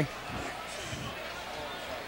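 Faint ballpark crowd murmur under a steady low hum in the broadcast audio.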